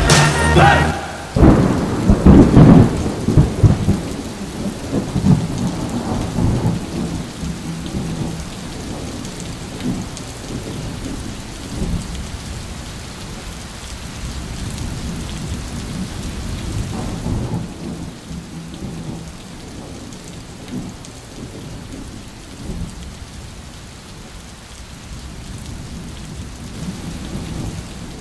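Thunderstorm: a loud roll of thunder about two seconds in that rumbles away over several seconds, then steady rain.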